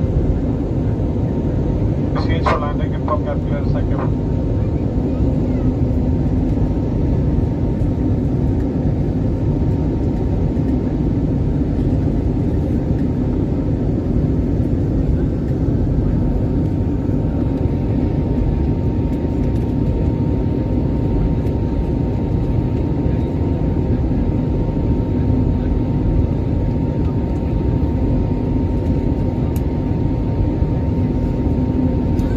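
Steady cabin noise of an airliner in flight: engine and airflow noise with a faint steady whine. A voice is heard briefly about two seconds in.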